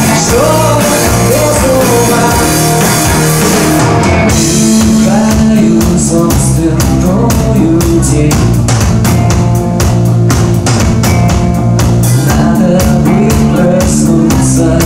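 Live rock band playing: a male lead vocal over electric guitar, bass guitar and drum kit. About four seconds in, the drums come to the fore with a steady, even beat and the singing thins out.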